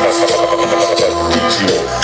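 Cumbia dance music played loud through a sonido sound system, with a steady pulsing bass beat and a long held note.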